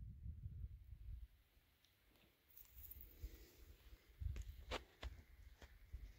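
Near silence, with a faint low rumble in the first second and a few soft clicks and thumps a little past the middle.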